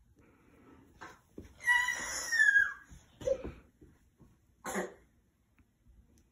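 A toddler's short vocal sounds: a high-pitched squeal about two seconds in, falling at its end, and a few brief breathy, cough-like bursts around it.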